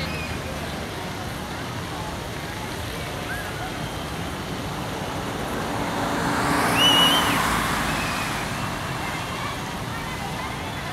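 Street traffic with a car passing close by, its sound building to its loudest about seven seconds in and then fading away, over faint voices of people on the sidewalk.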